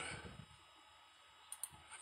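Two quick, sharp clicks about a second and a half in, against quiet room tone: a computer mouse being clicked.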